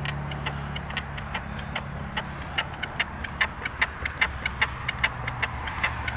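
Rapid clicking and knocking, about four clicks a second, from an outboard motor's transom bracket and clamp as the motor is pushed down and rocked on a rotten boat transom that flexes instead of holding solid. A low steady hum lies under the first two seconds.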